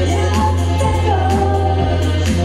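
Female voice singing a long, wavering note over a sustained low electric bass note, part of a solo bass-and-vocal song.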